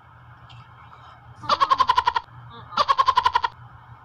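Two short bursts of a high, rapidly quavering voice-like call, each lasting under a second, the second coming about a second after the first.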